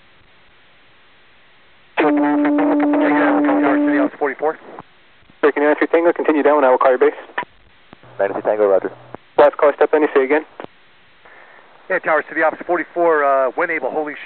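Air traffic control radio traffic heard through an airband receiver: a string of short, narrow-band voice transmissions with hiss between them. The first transmission, about two seconds in, has a steady tone running under the voice.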